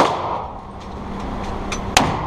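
Two gunshots echoing in an indoor range: one right at the start that rings and fades away, and a .50 AE revolver firing right at the end.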